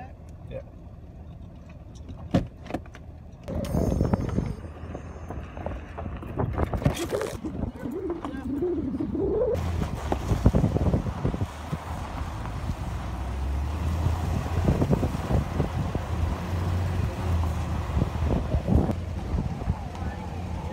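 Inside a pickup truck's cab in four-wheel drive, crawling over a rough gravel and rock track: engine rumble with tyres crunching and the body rattling, getting busier about halfway through. A few knocks near the start come from the floor shift lever being worked.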